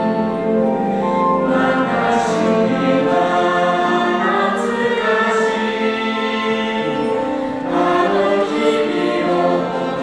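A small mixed vocal ensemble singing in harmony through microphones, accompanied by a concert wind band, with sustained sung notes and audible sibilant consonants.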